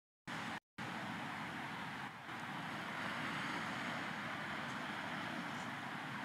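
Steady rush of surf on a rocky shore mixed with wind noise, broken by a brief gap just after the start.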